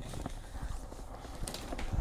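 Faint footsteps with a low handling rumble on the microphone while walking.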